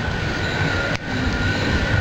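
Treadmills running: a steady motor whine over a continuous rumble from the moving belt.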